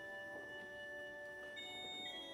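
Soft offertory music on a church organ: long held notes sounding together, with a new, higher chord coming in about one and a half seconds in.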